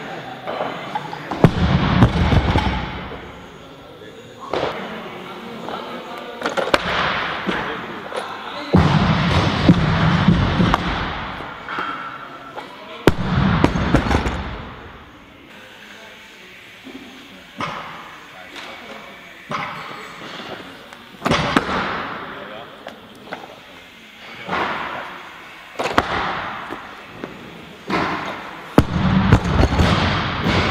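Loaded barbell with Eleiko bumper plates dropped and set down on a lifting platform: heavy thuds and plate clanks, the first a second or two in after an overhead jerk, more around ten and fourteen seconds and near the end, with other sharp knocks in between.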